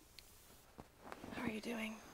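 A soft whispered voice, quiet at first, with a short murmured phrase in the second half that ends on a brief held voiced sound.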